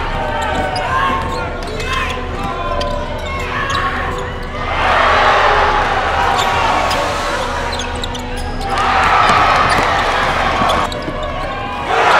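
Live basketball game sound in a gym: a ball bouncing on the hardwood court amid the voices of players and spectators. Louder, noisier crowd sound swells about five seconds in and again near nine seconds.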